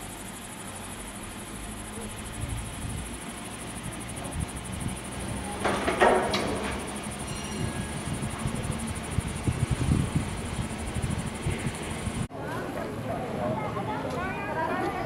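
Gondola lift running: a steady mechanical hiss and hum with low rumbling, and a short loud clatter about six seconds in.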